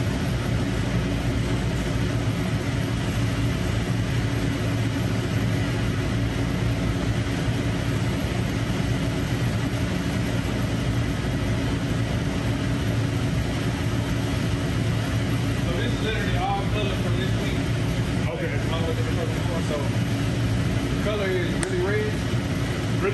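Powder-coating shop equipment running with a steady low hum that does not change, left on because spraying is about to start.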